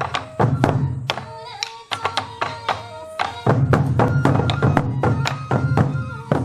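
Sansa Odori festival music: a group of waist-slung taiko drums struck together in a steady rhythm, with a bamboo flute melody over them. The drumming thins out about a second in and comes back in full about halfway through.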